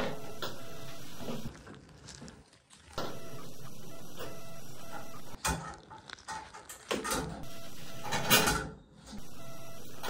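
A steady mechanical hum that cuts out and comes back several times, with clicks and a brief scraping noise in the gaps, while a grabbing tool works a toy car lodged in a tub drain.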